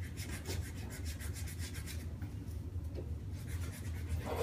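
Fabric and contents of a backpack rustling and rubbing as someone rummages through it by hand, a fast run of soft scratchy strokes over a steady low hum.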